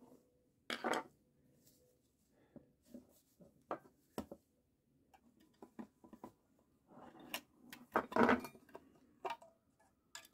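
Plastic housing of a Eufy HomeBase 2 being pried apart with a metal blade and its inner chassis slid out of the shell: scattered clicks and short scrapes, with a longer scraping rub about eight seconds in.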